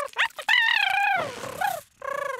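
Cartoon tardigrade's cute creature vocalisation: a couple of short high squeaks, then a longer wavering, high-pitched coo that falls in pitch as it settles down to sleep.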